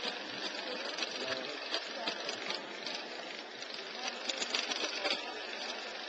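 Work-site noise: machinery running, with many sharp clicks and clatters through it and faint voices underneath.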